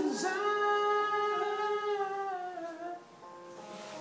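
Singing of a slow ballad: one long held note over music, which drops a little in pitch and fades about three seconds in.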